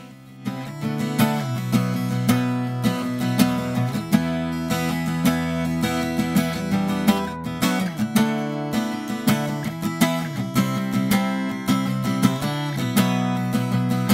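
Crafter steel-string acoustic guitar, freshly strung with NIG Prateada steel strings, strummed and picked with a flat pick through a run of chords; the playing starts about half a second in.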